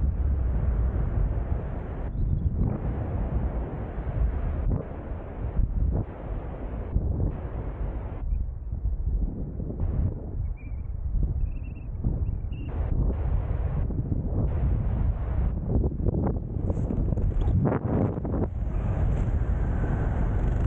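Wind rushing over a helmet-mounted camera's microphone during flight under an open canopy. It is a loud, low, buffeting rush that swells and dips irregularly.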